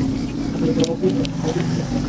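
A steady, low mechanical hum, like a motor or engine running, with a few faint clicks over it.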